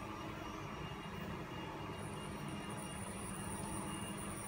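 Faint, steady machine-like room hum of a workshop, with a low drone and, from about halfway, a faint high whine joining in. The fingers pressing the screen edge make no separate sound.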